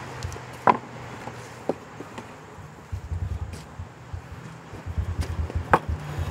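Stones knocking against stone as they are set on a dry-stack wall: a few sharp clacks, the loudest about a second in and near the end, over a low rumble that starts halfway through.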